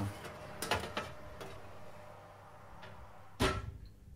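A metal baking tray being slid off an oven rack and handled, with a few light knocks and scrapes, then one loud metallic clunk about three and a half seconds in.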